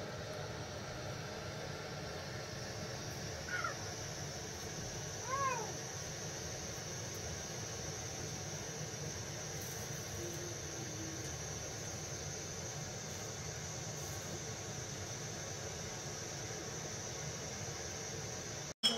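Two short cat meows about two seconds apart, a few seconds in, over a steady low background noise.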